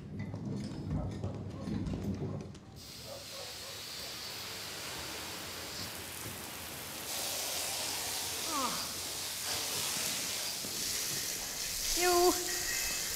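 Garden hose spraying water in a concrete kennel, a steady hiss that starts about three seconds in and gets louder about seven seconds in. A few low knocks of handling come before it.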